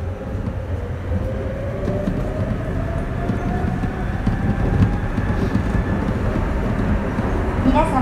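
A Sapporo Namboku Line rubber-tyred subway train accelerating. Its motor whine rises slowly in pitch over a low running rumble that grows steadily louder.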